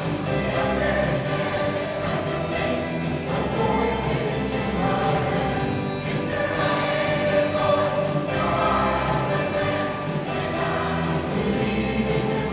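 Large mixed choir singing together with a rock band, a steady beat running under the voices.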